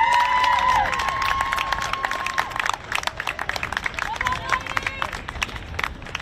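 Players and spectators shouting and cheering in high voices, with scattered clapping, as a goal is celebrated. A long, drawn-out shout comes in the first seconds and another a little before the end, over irregular claps.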